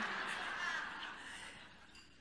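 Audience laughing in a large hall, the laughter dying away over about two seconds.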